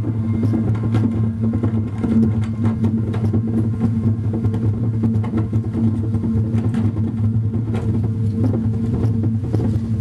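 Live electronic noise music from synthesizers: a dense, steady low drone with scattered clicks and crackles over it.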